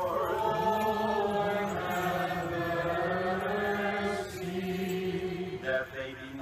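Several voices chanting a slow, held melody together in Byzantine chant: the sung response to a petition of the litany at a memorial service. The singing stops shortly before the end.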